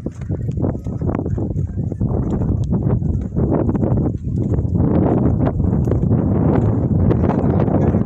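Footsteps crunching on dry, loose dirt with a steady rumble of wind on the phone's microphone, the rumble growing stronger from about halfway through.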